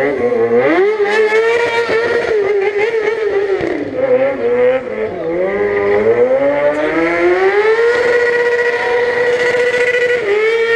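Racing motorcycle engines revving hard on the circuit. The pitch drops and climbs again several times, then holds one steady high note near the end.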